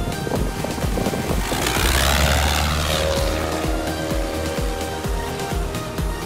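Piper Super Cub's piston engine and propeller passing low overhead, swelling to its loudest about two seconds in, then fading with a falling pitch as it climbs away towing a banner. Electronic background music with a steady beat plays throughout.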